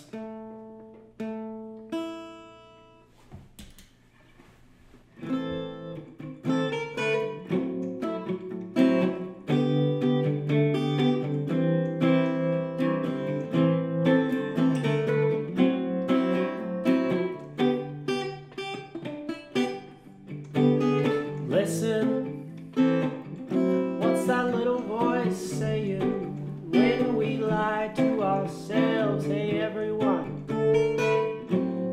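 Acoustic guitar: a few chords ring out and fade, then after a short pause steady strumming starts about five seconds in and carries on as a song's opening.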